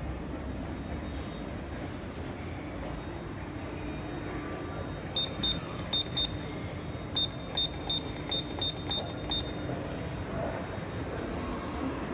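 Electronic push-button beeping: about a dozen short, high beeps of one pitch from about five seconds in to nine and a half, first two pairs and then a quicker, even run, as the button is pressed again and again. A steady indoor hum runs underneath.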